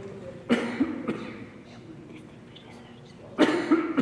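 A person coughing: two short fits of two coughs each, about half a second in and again near the end.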